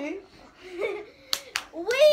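Two sharp hand claps, about a quarter second apart, a little past the middle, between bursts of voices chanting.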